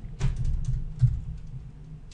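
Typing on a computer keyboard: an irregular run of keystrokes as a short word is typed, with a louder stroke about a second in.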